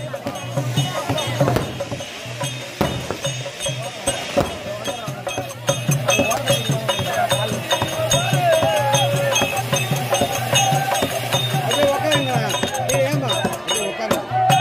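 Therukoothu folk music: a repeating drum beat with a wavering melody that grows louder after about six to eight seconds, over crowd voices and the crackle of a ground firework fountain.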